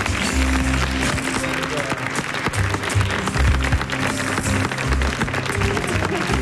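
Studio audience applauding over background music with a steady bass line.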